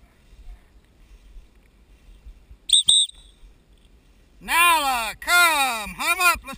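A short, high whistle in two quick pips about three seconds in, a handler's signal to a bird dog working the field. Near the end a loud voice calls out twice in long, falling calls.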